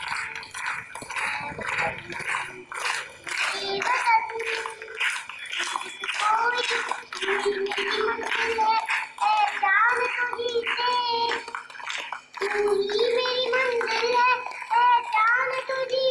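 A young girl singing a song into a microphone, with held, bending notes. Through the first few seconds a rapid patter of sharp clicks runs under her voice.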